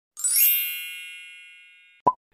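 A bright chime sound effect: one ding with a sparkling shimmer on top, ringing and slowly fading away over about two seconds.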